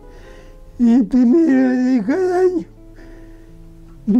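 An old man's voice speaking in Spanish for about two seconds, over quiet instrumental background music.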